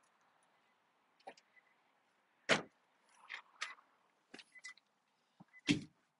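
Scattered knocks, clicks and rustles of people settling into a car's cabin, with two louder knocks, one about halfway through and one near the end.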